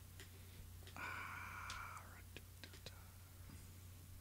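A soft, drawn-out hesitation 'uh' from a man thinking, about a second in, over a steady low hum; a few faint clicks follow.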